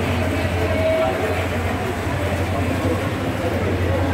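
Busy communal dining hall ambience: a steady low rumble with the chatter of many people.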